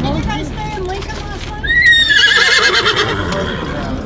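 A horse whinnies once, a long, high, wavering call that starts about a second and a half in and trails off shortly before the end, over people talking.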